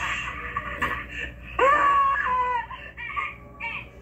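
A voice over a telephone line making strained, high-pitched whimpering and wailing cries rather than words, with a long wavering wail about one and a half seconds in and shorter cries after it. It sounds like someone being choked or crying.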